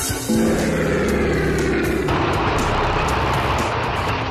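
Opening theme music of a television programme, with sustained low chords. About halfway through, a rushing sound effect swells over the music.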